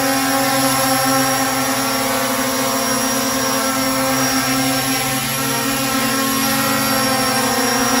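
ZLL SG907 Max quadcopter hovering in place hands-off, its four brushless motors and propellers giving a steady whine made of several even tones.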